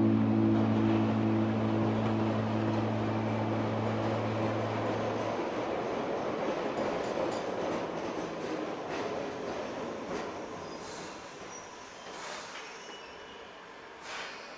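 Subway train sound effect running and fading gradually, with a few brief high sounds near the end. For the first five seconds the held final chord of the song rings on over it and dies away.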